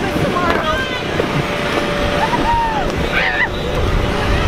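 Teenagers' voices and laughter over a steady low rumble, with a faint steady hum throughout.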